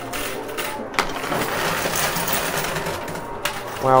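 Coin pusher machine running: its motorized pusher shelf sliding under a heap of quarters, with a steady clatter of coins clinking and scraping against each other, and a sharper click about a second in.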